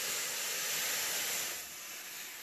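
Steady hissing noise that eases slightly about a second and a half in.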